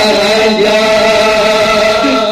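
A man's voice chanting a devotional Urdu manqabat through a microphone and PA, holding long, steady notes.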